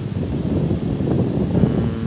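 Wind buffeting the microphone: an uneven low rumble with no clear pitch.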